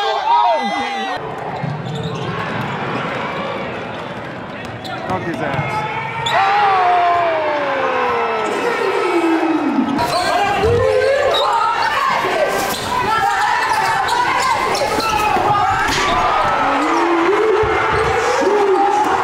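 Basketball game sound: a basketball bouncing on a court amid shouting players and spectators, with one long falling note about six seconds in. After about ten seconds it carries the reverberation of a gym hall.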